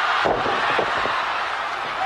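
Loud arena crowd noise throughout, with a thud about a quarter second in as a wrestler's body hits the ring canvas, and a lighter knock near the one-second mark.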